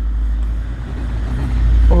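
A deep, steady rumble that builds to its loudest near the end, with nothing higher-pitched standing out over it.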